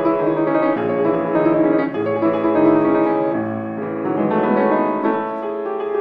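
Solo grand piano playing a concert étude in C-sharp minor, a continuous flow of many overlapping notes with both hands across the keyboard.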